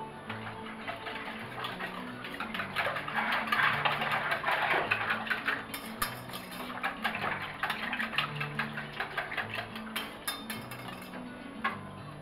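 Wire whisk beating an egg and sugar mixture in an enamel pot: a fast run of light clicks and scrapes against the pot, busiest a few seconds in. Background music with low sustained notes plays under it.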